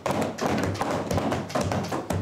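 Members of the chamber drumming their palms on their wooden desks in approval, a dense run of many overlapping, irregular thumps.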